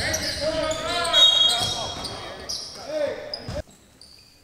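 Basketball game play on a hardwood gym court: the ball bouncing, sneakers squeaking and players' voices in a reverberant hall. The sound stops abruptly near the end.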